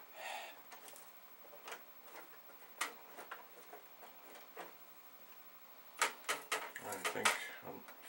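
Scattered light clicks and taps as tiny screws are worked out of a Commodore VIC-20 keyboard with a small screwdriver, with a quicker run of clicks about six seconds in.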